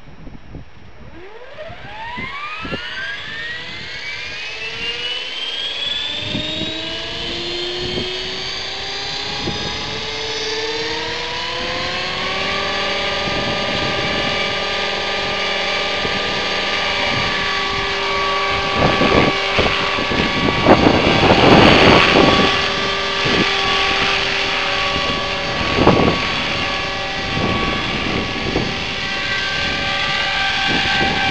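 HK500GT electric RC helicopter with an MD500D scale body spooling up: its motor, gear and rotor whine rise in pitch over about ten seconds, then hold steady at a head speed of about 2630 rpm. It lifts off into a hover. Gusty noise bursts around two-thirds of the way through sound like wind buffeting the microphone.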